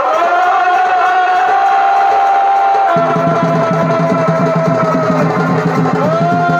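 Chhau dance music: a shehnai holds long, slightly bending notes, and drums join in with a fast, dense beat about three seconds in.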